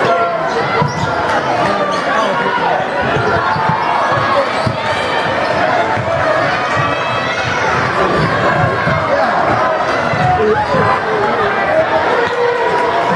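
Basketball game in a packed gym: a crowd of spectators calling and shouting, with the ball bouncing on the hardwood floor.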